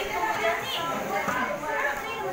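Several young voices talking and calling over one another: overlapping chatter, no single clear speaker.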